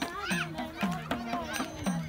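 Folk dance music with a steady drum beat and a low sliding bass note repeating about twice a second, with voices over it.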